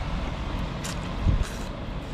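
A man slurping oily clear hotpot noodles off chopsticks, two short slurps in quick succession, over a steady low rumble.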